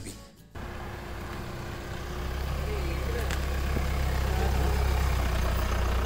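A car engine idling: a steady low hum that starts about half a second in and grows a little louder about two seconds in.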